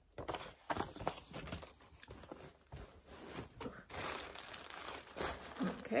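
Paper and fabric being handled and shifted about, rustling and crinkling with irregular small crackles.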